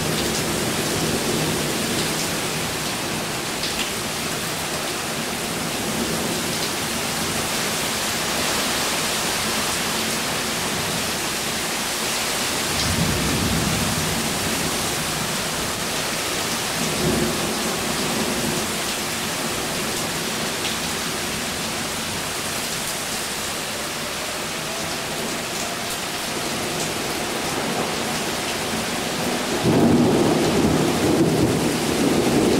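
Thunderstorm: steady heavy rain with rolls of thunder rumbling a little before halfway, again shortly after, and more loudly right at the end.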